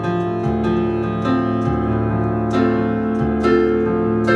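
Kurzweil digital stage piano played solo: a slow chordal passage, with new chords and bass notes struck about once a second and left ringing.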